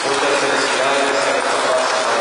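A congregation reciting a prayer together in unison, many voices overlapping into a steady murmur.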